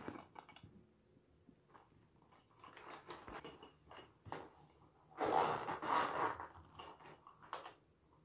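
A fabric pencil case being handled and unzipped: scattered rustles and clicks, then a longer scratchy run of noise a little past the middle as the zipper is pulled, and the pens and pencils inside shift about.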